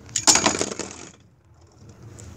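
Beyblade spinning tops colliding in a plastic stadium: a quick, dense clatter of hard clicks lasting about a second, then it goes quiet. The clash ends in a burst finish, with one top knocked apart.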